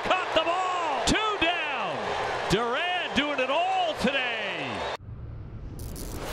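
A man's excited voice calling out in long rising and falling shouts over a noisy background. About five seconds in the sound cuts off abruptly and gives way to a low rumble and a sudden swooshing hit, a broadcast transition effect.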